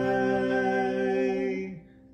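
A man and a woman singing a held final note together over acoustic guitars, cutting off about 1.7 seconds in, with a low guitar note ringing on faintly after.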